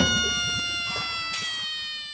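A comic sound-effect note: one long held tone with several overtones that slides slowly down in pitch and fades away.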